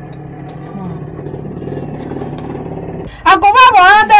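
A low, steady background rumble, growing slightly louder, fills a pause of about three seconds. Then a woman's loud speech starts again.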